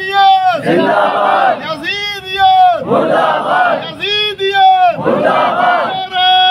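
A man's amplified voice calling out in long, held, wavering cries, answered each time by a congregation of mourners wailing together. The call and the mass response alternate about every two seconds, three times over: collective lamentation at a majlis.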